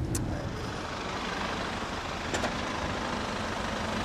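Steady low rumble of road-vehicle noise, with a few faint clicks.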